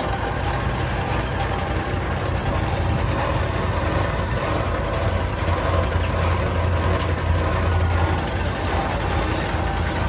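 Engine of a Wood-Mizer Super Hydraulic portable bandsaw mill running steadily, with a deeper hum swelling for a couple of seconds just past the middle.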